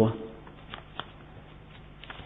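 A man's voice trailing off at the very start, then a pause of low steady hiss with two faint clicks about a second in.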